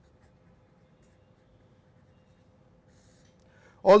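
Faint strokes of a marker pen writing on paper, with a soft stroke about three seconds in, over a faint steady hum. A man's voice starts right at the end.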